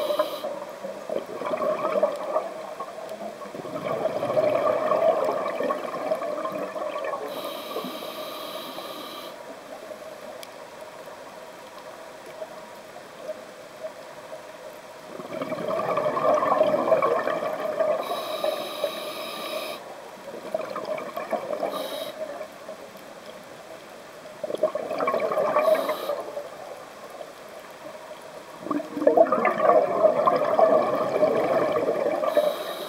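Scuba diver's breathing through a regulator, heard underwater: exhaled bubbles gurgle out in bursts every several seconds, with a sharper high hiss between them twice.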